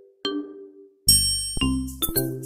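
Background music of bell-like struck notes that ring and fade. A short gap comes about a second in, followed by a louder chime chord over a low bass note.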